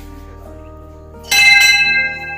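A hanging brass temple bell struck once, a little over a second in, ringing on with several clear tones as it fades, over background music.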